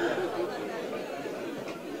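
Faint murmur of many voices chattering in a large room.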